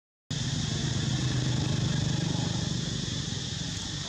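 A vehicle engine humming low and steady, swelling about two seconds in and then fading, over a steady high hiss. The sound drops out for a moment at the very start.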